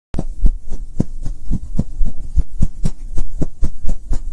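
Intro sound for an animated logo: a run of deep thumps, about four a second, over a low hum.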